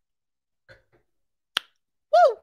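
Faint sounds of someone finishing a sip of a dry drink, then one sharp click about a second and a half in.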